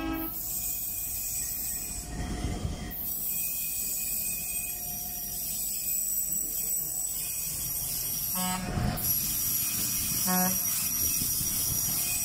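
Rail track tamping machine (levelling, lining and tamping machine) approaching along the track with a steady low running noise, sounding its horn twice: a longer blast about two-thirds of the way in and a short one about two seconds later. A brief rush of noise comes about two seconds in.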